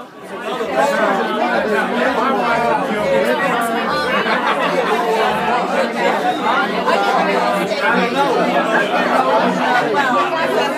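Crowd chatter: many people talking at once in a busy room, a steady babble of overlapping voices.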